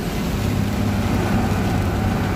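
Mercedes-Benz 1218 truck's diesel engine running at a steady cruise, heard from inside the cab, over the even hiss of heavy rain and tyres on a wet road.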